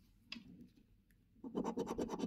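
A coin scratching the coating off a scratch card in fast, short back-and-forth strokes, starting about a second and a half in after a faint click.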